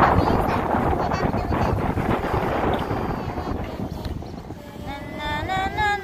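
Wind buffeting the phone's microphone, a steady rumbling rustle that fades over the first few seconds. Near the end a voice starts singing "na, na, na".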